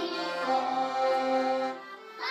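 Piano accordion playing held chords, fading out just before the end.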